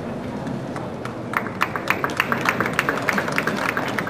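Sparse applause: a few people clapping, separate sharp claps at several a second, starting about a second in and fading near the end.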